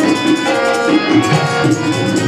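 Live Rajasthani folk music accompanying a Bhavai dance: a hand drum keeps a steady beat of about four strokes a second under sustained, held melodic tones.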